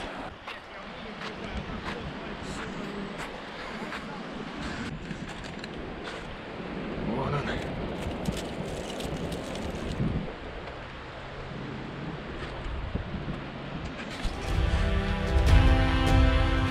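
Steady outdoor rushing of wind on the microphone and river water, with a faint voice and a few light clicks. Background music comes in about fourteen seconds in.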